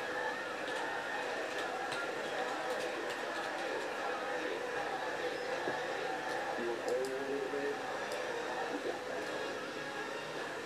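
Indistinct background voices, too faint or muffled to make out words, over steady room noise.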